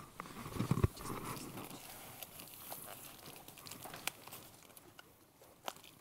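A parcel being unwrapped close to a microphone: rustling and crinkling of its wrapping, with a few sharp clicks, the loudest about a second in.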